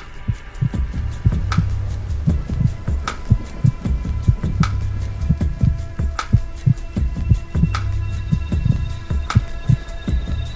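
Film soundtrack sound design: a low, heartbeat-like pulse of repeated thumps over a steady low hum, with a sharp click and a ringing tone about every second and a half.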